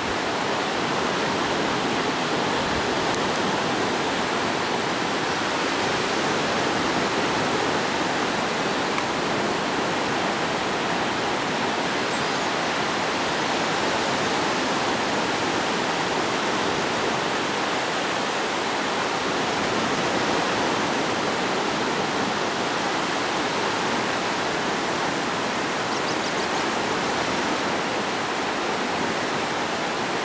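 Ocean surf breaking and washing onto a sandy beach, a steady, even rush that doesn't let up.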